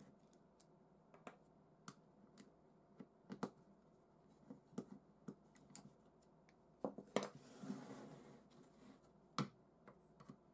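Light clicks and taps of a hand screwdriver and plywood jig parts being handled as the jig is unscrewed and taken apart. About seven seconds in comes a cluster of louder knocks with a brief scrape as a wooden part is slid and set down, then a single sharp knock near the end.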